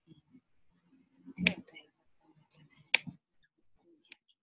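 Computer mouse clicks: two sharp clicks, about a second and a half in and about three seconds in, with a few fainter ticks between.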